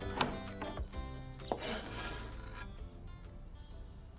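A kitchen knife chopping pineapple on a wooden chopping board, a few strokes in the first two seconds, under light background music that fades away.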